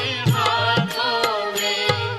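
Hindu devotional song: a voice singing a chant-like melody over a steady low drone, with repeated drum strokes.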